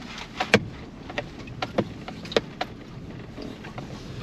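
Pickup truck cab while driving slowly over rough lake ice: a steady low engine and road hum with irregular sharp clicks and knocks, about eight of them, as the truck jolts along.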